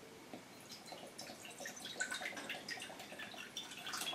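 Apple juice poured from a carton into a glass bowl: faint splashing and dripping as the juice lands in the bowl.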